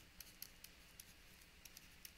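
Very faint, irregular ticks and taps of a stylus writing on a tablet, a few per second, over a low hiss.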